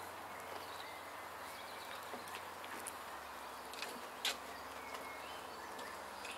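Quiet woodland ambience with faint bird chirps and a few small clicks, and one short knock about four seconds in.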